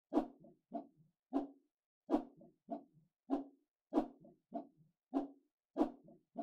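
A looped cartoon-style sound effect: short pitched knocks, about two or three a second, in a pattern that repeats every second or so.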